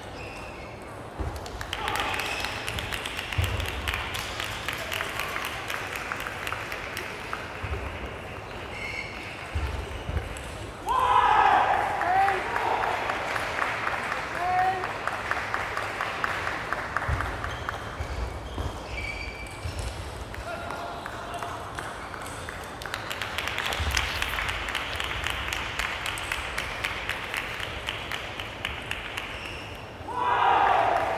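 Sports hall ambience: table tennis balls clicking rapidly off bats and tables at other matches, with voices echoing around the hall and a loud shout about eleven seconds in.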